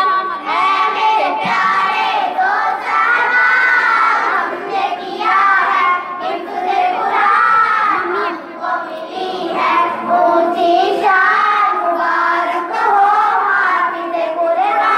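A naat, an Urdu devotional song, sung in a continuous melodic vocal line with what sound like several voices overlapping, the pitch gliding up and down without pause.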